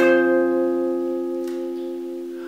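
A guitar chord strummed once, then left ringing and slowly fading.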